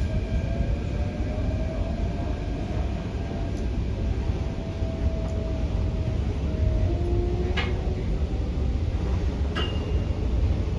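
Hyundai Rotem K-Train electric multiple unit running at speed, heard from inside the carriage: a steady deep rumble of wheels on rail with a faint whine that drifts gently in pitch. Two sharp clicks come near the end, about two seconds apart.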